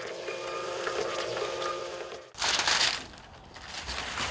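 Label printer running as it feeds out a long strip of courier waybill labels, a steady mechanical whirr. It cuts off after about two seconds, followed by a brief burst of noise.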